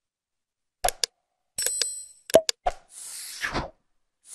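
Subscribe-button outro sound effects: several pairs of short click pops, a brief bell-like ding about one and a half seconds in, then a whooshing swish near the end.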